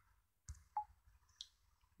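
Near silence with three faint, brief clicks spread over about a second.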